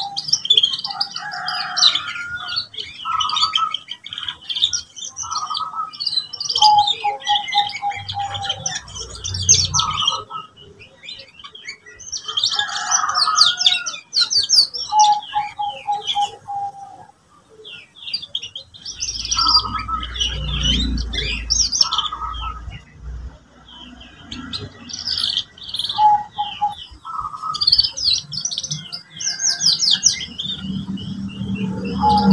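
Domestic canary singing in phrases of rapid high trills and lower, fast repeated rolling notes, broken by short pauses.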